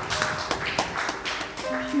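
Soft held keyboard notes with scattered sharp claps and taps over them as a church song winds down.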